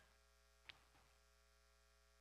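Near silence: a faint steady electrical hum, with one brief faint click about a third of the way in.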